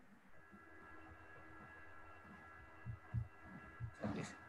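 Faint steady hum of several held tones, with a few soft low thumps about three seconds in.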